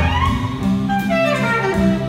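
Live jazz quartet playing: saxophone with guitar, upright bass and drums. Lines sweep down and then up in pitch over sustained low bass notes, with a few sharp drum or cymbal strikes.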